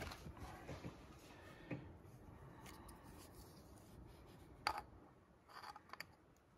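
Faint handling noise: a few soft clicks and rubs over near silence, the sharpest click about three-quarters of the way through.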